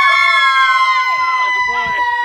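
A group of people shrieking in excitement, one high voice holding a single long, steady shriek over other voices that rise and fall beneath it.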